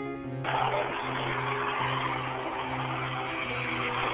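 Background music, joined about half a second in by a steady rushing noise from inside a moving car, recorded on a low-quality cell phone.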